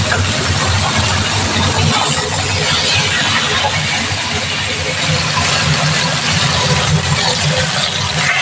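Beef ribs sizzling as they sear in hot fat in a cast-iron pot, over a constant low hum.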